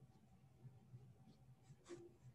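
Near silence: faint room hum with a few soft rustles, and a brief scrape near the end.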